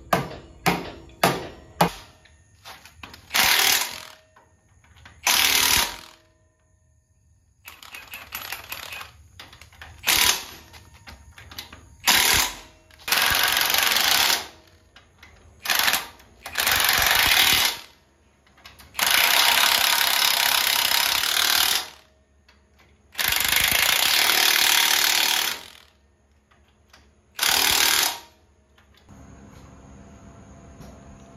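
A cordless impact wrench hammering away in repeated bursts, from under a second to about three seconds each, on the bolts at the end of an axle housing. A few sharp knocks come first, in the opening two seconds.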